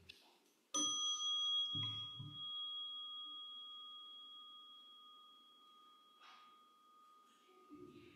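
A small brass singing bowl struck once, ringing with a few clear tones that fade slowly over about six seconds.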